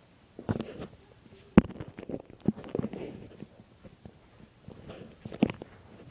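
Puppies play-wrestling: irregular scuffling, mouthing and knocks of paws and bodies on the floor, starting about half a second in, with a sharp knock about a second and a half in and another near the end.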